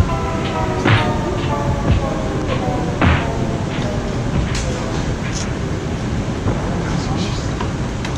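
Airport baggage carousel running over the steady noise of the arrivals hall, with a couple of sharp clunks about one and three seconds in. A held music chord fades out in the first second or two.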